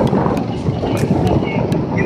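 Wind rushing over the microphone of a camera on a moving motorcycle, a steady, loud noise with the ride's road noise underneath.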